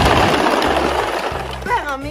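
Hard plastic wheels of a ride-on toy dump truck rattling over rough pavement as it is pushed along, fading out over the first second and a half. Background music with a low bass line runs underneath.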